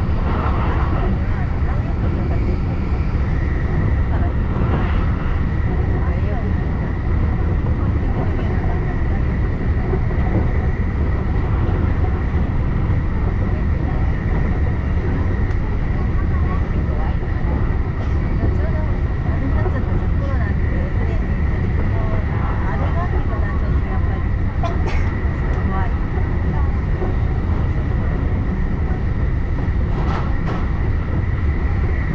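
Electric commuter train running at speed, heard from inside the passenger car: a steady, loud rumble of wheels on rails with a thin, steady high whine over it.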